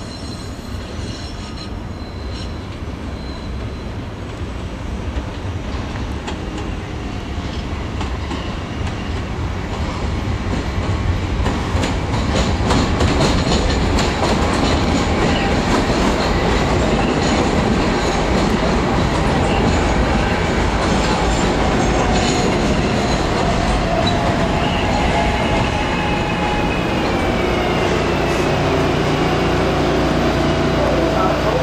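A SEPTA Market–Frankford Line train of Kawasaki M-4 cars pulling into the platform. It grows steadily louder for about twelve seconds as it arrives, then runs loud and steady alongside with wheel clatter. Near the end, falling whining tones come in as it slows to a stop.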